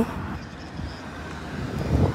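Steady low rumble of outdoor street traffic, with a slight swell near the end.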